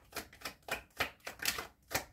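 A deck of tarot cards being shuffled by hand. The cards flick and slap in a quick run of crisp clicks, about three or four a second.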